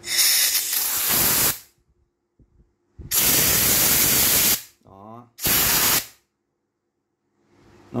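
Compressed air hissing from a dial tyre pressure gauge's chuck pressed onto an air valve, in three bursts: two of about a second and a half, then a short one.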